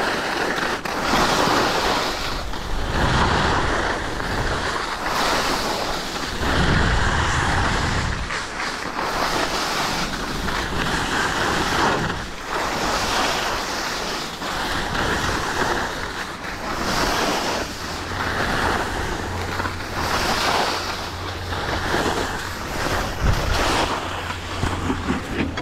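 Skis carving and scraping over packed snow through a series of turns, each turn a swell of hiss, with wind rushing over the camera microphone. A low steady hum joins past the middle.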